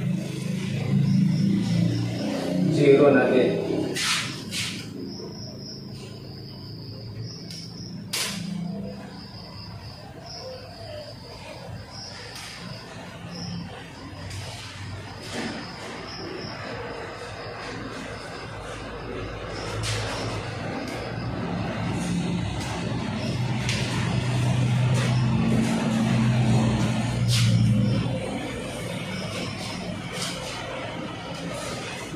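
Whiteboard marker drawing lines along a metal ruler, with a few sharp clicks as the ruler is set against and lifted off the board, over a faint steady high whine in the first half.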